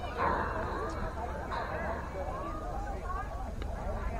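Distant shouted voices calling out across an open ball field, in short bursts, over a steady low rumble of wind on the microphone.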